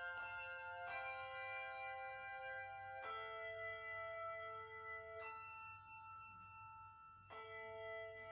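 Handbell choir ringing a slow piece: chords of several bells struck together every second or two, each left to ring on and fade.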